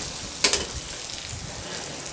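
Sliced onions sizzling in hot oil in an iron kadai, stirred with a metal spatula that knocks sharply against the pan about half a second in.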